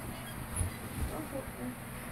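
Rustling and low thuds of a person moving and pulling a sock on. A few faint, short pitched sounds come about a second in.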